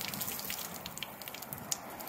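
Water from a garden hose spattering and dripping on a boat's fiberglass gelcoat hull: a steady hiss sprinkled with small, quick drip ticks.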